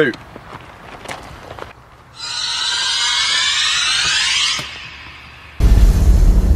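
Horror-trailer sound design: a high, noisy swell with gliding tones lasts about two and a half seconds and cuts off sharply. About half a second before the end, a sudden deep boom hits and the scary music comes in.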